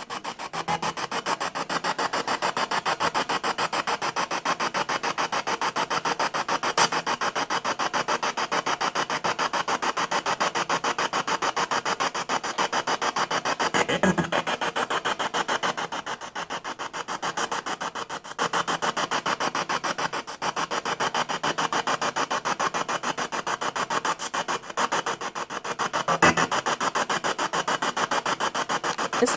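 Spirit box sweeping through radio stations: a rapid, evenly chopped stream of static and radio fragments, several pulses a second, with brief breaks. About halfway through comes a fragment that is captioned as the words "I am", taken as a spirit's answer.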